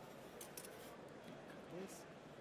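Faint light clicks and scrapes, with a brief murmured voice shortly before the end, over quiet room tone.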